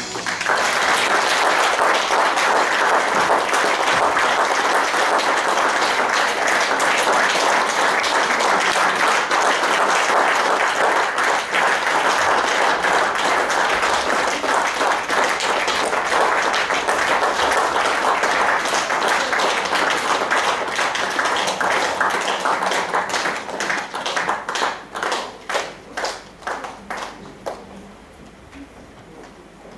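Audience applauding steadily, then thinning out into fewer scattered separate claps over the last few seconds as the applause dies away.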